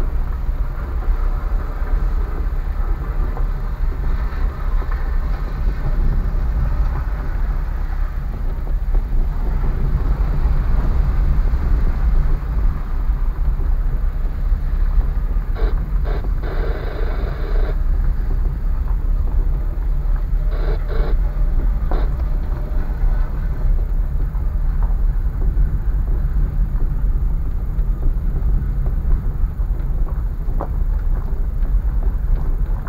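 Car driving along a rutted, potholed dirt road, heard from inside the cabin: a steady low rumble of road and engine. About halfway through comes a louder rough burst of tyre noise lasting a couple of seconds, and a shorter one a few seconds later.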